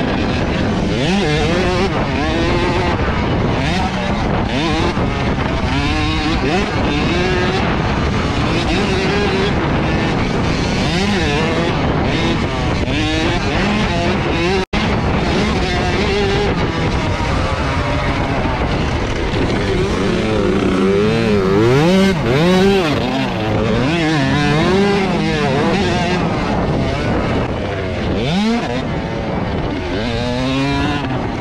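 Husqvarna TC65 two-stroke dirt bike engine at race pace, heard from on the bike, its pitch climbing and falling again and again as the throttle is worked through the gears. The sound drops out for a split second about halfway through.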